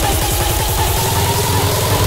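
Build-up in a hardstyle/rawstyle dance track: a rapid kick-drum roll that speeds up about halfway through, under a held high synth note.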